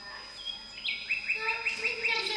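A quick run of about six high, bird-like chirps, each dipping slightly in pitch, starting about halfway through.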